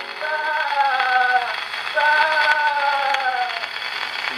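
A 10-inch 78 rpm shellac record of nursery-rhyme music playing acoustically on a wind-up HMV 102 gramophone. Two long held notes, each sliding slightly down in pitch, sound over the record's faint surface hiss, between one sung rhyme and the next.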